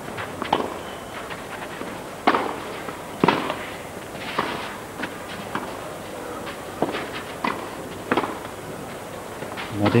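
Tennis ball being struck back and forth by rackets in a clay-court rally: sharp pops at irregular intervals of roughly a second, some louder and some fainter, over a low steady background of the stadium.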